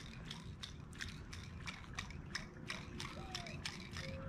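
Spinning reel being cranked on a lure retrieve, its gears ticking in a steady rapid rhythm of about four or five clicks a second.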